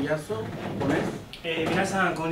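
A man speaking, with a short pause about halfway through before he carries on.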